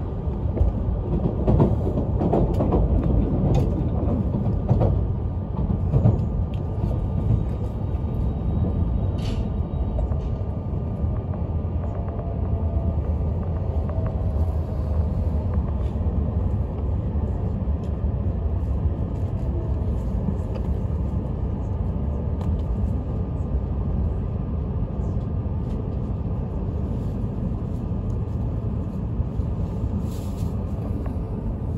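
Cabin rumble of an E5 series Shinkansen slowing into a station, with a few irregular knocks over the track in the first six seconds and a faint falling whine a little before the middle as the train loses speed.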